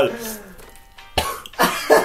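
A man coughs twice in quick succession just over a second in, followed by the start of laughter.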